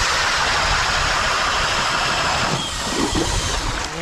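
DeWalt DCD999 cordless FlexVolt drill turning an ice auger as it bores a hole through thick lake ice. A loud, steady grinding hiss that eases off a little about two and a half seconds in.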